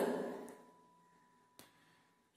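The end of a voice dies away in the first half second, leaving near silence broken by one faint click near the end.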